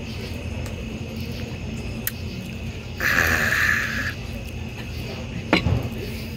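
A man drinking from a glass of beer against steady background noise, followed about halfway through by a breathy exhale lasting about a second. A sharp knock comes near the end.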